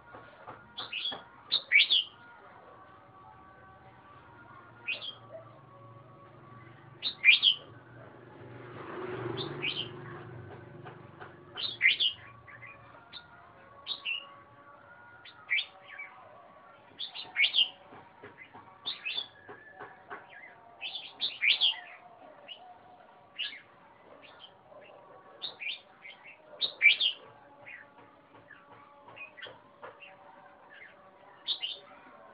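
Caged red-whiskered bulbul singing, short bright phrases repeated every second or two. A soft rushing noise swells and fades about a third of the way in.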